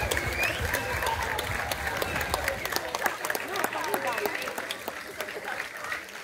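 Audience applauding after a folk dance, the clapping thinning out and fading, with voices talking in the crowd.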